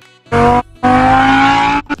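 A man humming a tune inside a moving car: two held notes, the second longer and slowly rising, over the steady hum of the car's cabin.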